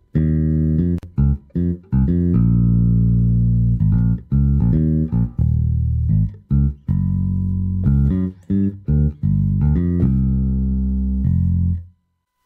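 Ample Sound Bass TR6 virtual six-string electric bass played from a keyboard. It plays a bass line of short plucked notes mixed with longer held ones, and cuts off just before the end.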